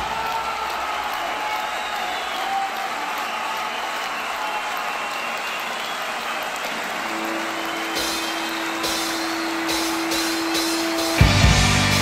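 Live rock band between songs: a steady noisy wash, then a single held note comes in about seven seconds in, with light high ticks from about eight seconds. The full band with drums kicks into the next song about eleven seconds in.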